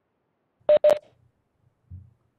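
Two short electronic beeps of one steady pitch, a quarter second apart, followed by a soft low thump near the end.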